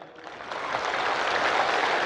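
A large crowd applauding, building up over the first second and then holding steady.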